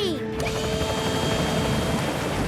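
Cartoon soundtrack: a voice gliding down in pitch right at the start, then a steady held music note over an even rushing noise.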